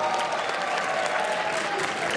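Audience applauding, a dense patter of many hands clapping, just after the music stops.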